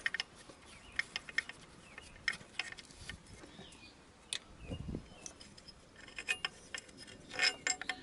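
Light metallic clicks and clinks of a long alternator mounting bolt being worked out of its bracket by hand and with tools. There is a dull thump about halfway through and a quicker run of clicks near the end.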